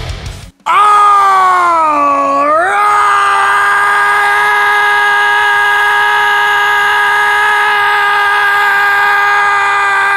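A man's long, loud scream held on one pitch. About two seconds in it sags lower, then climbs back and holds steady.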